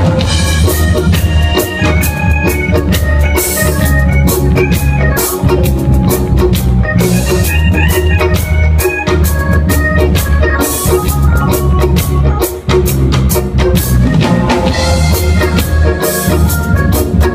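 A live band playing an instrumental TV theme tune, loud and close: a heavy bass guitar line, a drum kit with cymbal crashes every few seconds, and an organ-toned melody on top.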